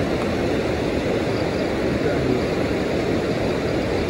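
Steady rushing of a fast river, a constant full noise with no breaks.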